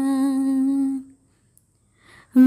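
A woman humming a single steady low note that holds for about a second and then stops.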